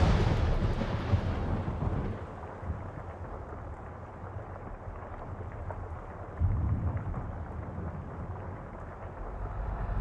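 A deep, thunder-like rumble dying away after a loud boom. It is loud at first, fades over the first few seconds and swells again about six seconds in.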